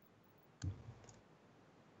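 Near silence, broken once by a single soft click a little over half a second in.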